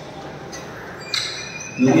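Quiet background hiss of an empty room. About a second in comes a brief, sharper hiss, and near the end a man starts speaking.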